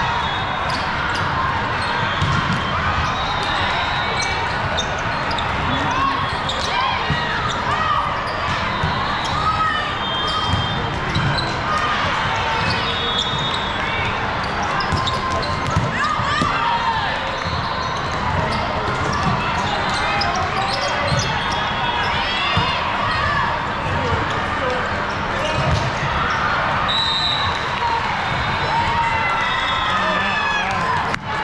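Indoor volleyball match in a large, echoing gym: a steady din of players' and spectators' voices, with the ball thudding off hands and floor and athletic shoes squeaking on the court.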